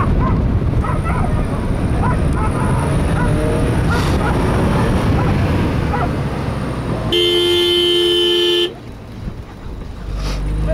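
A vehicle driving fast over desert sand, heard from inside the cabin as a loud steady rumble. About seven seconds in, a car horn sounds once in one steady blast for about a second and a half, and the rumble drops away after it.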